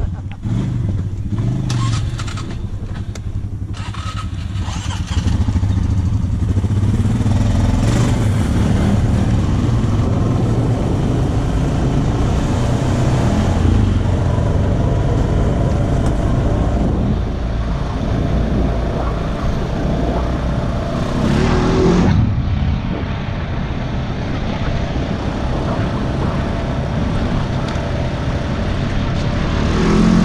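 Honda Rancher ATV's single-cylinder engine pulling away from a stop and running steadily at riding speed along a dirt trail. It gets louder about five seconds in and dips briefly a little past two-thirds of the way through.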